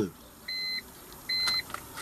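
Two short, high electronic beeps, evenly spaced about a second apart, part of a beep that keeps repeating at a steady pace.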